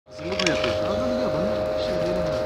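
A voice talking indistinctly over a steady high-pitched hum.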